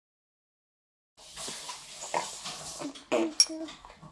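An eight-month-old baby making short babbling vocal sounds, starting about a second in, with a sharp click about three seconds in.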